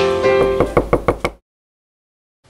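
A run of about seven sharp knocks, coming faster and faster, over sustained music. Everything cuts off abruptly to dead silence a little past halfway.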